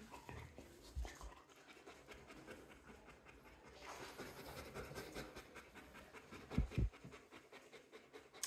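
Dog panting softly and steadily with its mouth open, its muzzle and mouth full of porcupine quills. A couple of short low thumps come about two-thirds of the way through.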